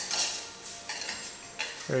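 A utensil stirring thick pasta and sauce in a stainless steel pot, scraping and clinking irregularly against the metal.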